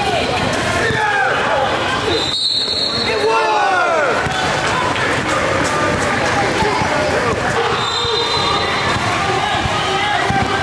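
Indoor basketball game in a large gym: the ball bouncing on the court and sneakers squeaking in short chirps that rise and fall, among players' voices.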